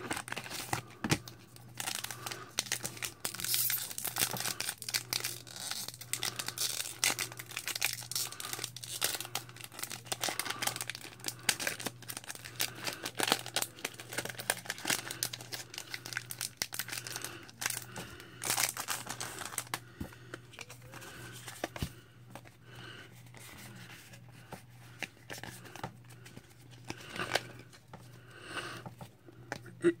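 Pokémon booster pack being torn open by hand: cardboard packaging and foil wrapper tearing and crinkling, dense for the first twenty seconds or so, then thinning to sparser rustles and clicks.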